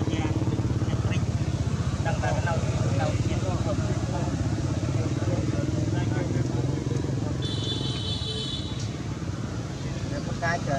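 A motor running steadily nearby, a low drone with a fast throb, with brief low voices about two to three seconds in and a short high-pitched tone near the end.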